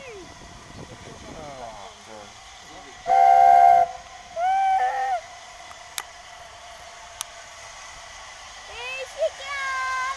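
LNER A4 No. 4464 Bittern's chime whistle sounding two short blasts about half a second apart, each a chord of several notes, the first the louder. Two sharp clicks follow a little later.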